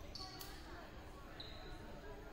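A ball strikes the hardwood gym floor once, sharply, about half a second in, in a large echoing gym. Short high shoe squeaks come near the start and again near the middle, over faint chatter.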